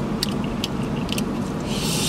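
Chewing and a few wet mouth clicks from eating saucy, crispy Korean fried chicken, then near the end a crunchy bite into a coated wing. A steady low rumble runs underneath.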